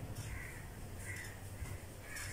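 Faint bird calls, a few short calls under a second apart, over a low steady hum.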